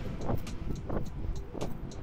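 Running footsteps on asphalt, about three strikes a second, over a steady low rumble.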